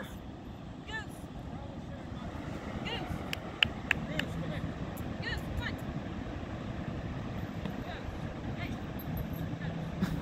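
Steady wash of ocean surf on an open beach, with faint distant voices now and then and one sharp click about three and a half seconds in.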